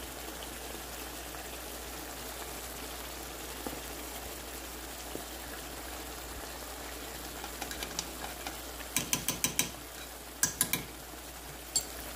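Thick spiced berbere sauce simmering in a nonstick frying pan, a steady soft sizzle and bubbling. About nine seconds in comes a quick run of sharp clicks, then three more a second later and one near the end.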